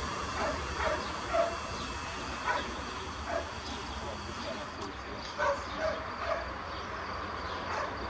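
A dog barking repeatedly, short barks coming irregularly every half second to a second or so, over a steady background hiss.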